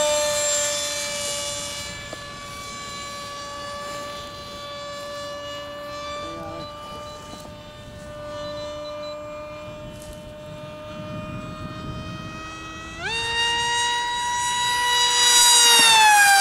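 Electric RC foam jet's 2400 kV brushless motor and 6x5.5 propellor on a 4S lipo, giving a steady high whine that fades as the plane flies away. About 13 s in the throttle is opened: the whine jumps suddenly higher and louder into a scream, and its pitch sags slightly near the end.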